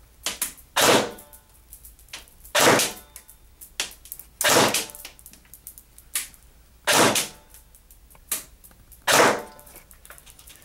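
Echo1 Red Star RPK airsoft electric gun with a version 3 gearbox firing single shots of 0.2 g BBs through a chronograph. There are five sharp shots, each a brief crack, spaced about two seconds apart.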